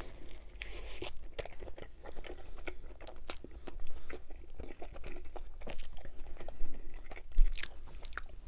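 Close-miked chewing of a bite of coney dog (hot dog in a steamed bun with meat sauce and mustard), heard as a stream of short, irregular mouth clicks and smacks.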